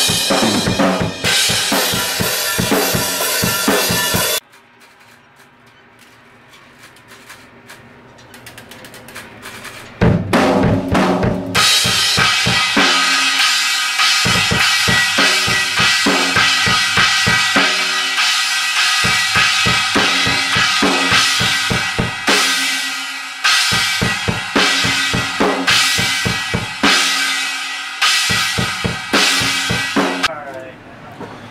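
PDP drum kit played hard and fast with bass drum, snare and cymbals, as the drum track for a heavy hardcore song is recorded. The playing breaks off about four seconds in, with a faint swelling wash for several seconds. It comes back with a few hits around ten seconds in, then runs on as steady, dense drumming.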